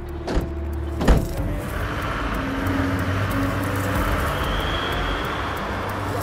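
Van doors slammed shut twice, about a second in and the second louder, then the van's engine running steadily as it drives away.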